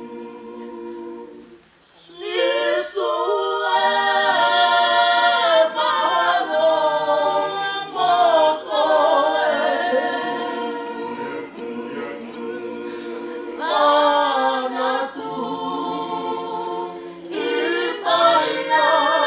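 A group of men's and women's voices singing together unaccompanied. A quieter phrase fades into a brief pause, then the singing comes in louder about two seconds in and swells again near the end.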